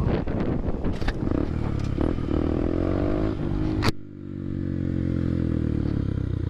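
Honda Grom's single-cylinder engine running under throttle, its pitch climbing over the first few seconds amid wind noise. About four seconds in the sound changes abruptly and the engine carries on steadily at a lower, slowly falling pitch.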